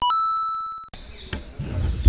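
A bell-like ding sound effect, opening with a quick step up in pitch, then ringing and fading before it cuts off abruptly about a second in. Outdoor background noise with a low rumble follows.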